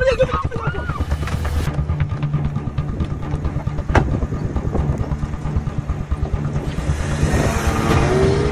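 Car engine running steadily with a low rumble, with a single sharp knock about four seconds in. A hiss swells near the end.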